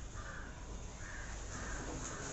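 A bird calling repeatedly in short harsh calls, about two a second, over a steady room hum.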